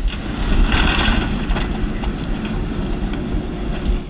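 John Deere 710L backhoe loader's diesel engine running under load, a steady rumble, with a brighter, noisier stretch about a second in.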